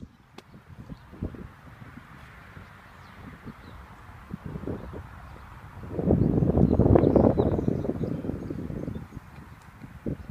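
Footsteps on asphalt as the camera operator walks, then about six seconds in a sudden loud rush of noise on the microphone that lasts some three seconds and fades.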